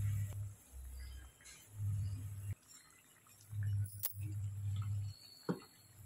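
Hot oil bubbling and sizzling faintly as batter-coated capsicum rings deep-fry in a steel kadai. A low hum comes and goes in several stretches, and there is a single sharp click about four seconds in.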